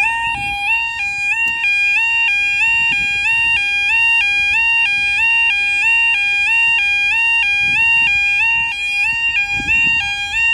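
Level crossing yodel alarm sounding continuously, a loud two-tone warble that switches rapidly and evenly between a lower and a higher pitch, warning road users at the crossing.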